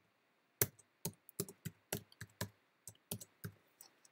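Typing on a computer keyboard: about a dozen quick, separate keystrokes over about three seconds, starting about half a second in, as a short line of code is entered.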